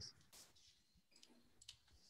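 Near silence on a video call, with a few faint clicks.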